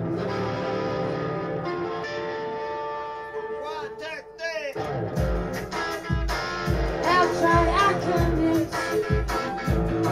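A live band playing a bluesy song: held electric guitar chords ring for the first half, then a deep bass drum beat comes in about halfway through, with singing over it.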